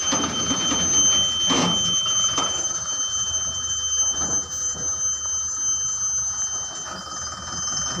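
A steady, unbroken high-pitched tone, with scattered knocks and rustling throughout.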